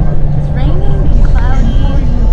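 Coach bus engine and road noise heard from inside the passenger cabin, a steady low rumble, with a voice speaking briefly over it.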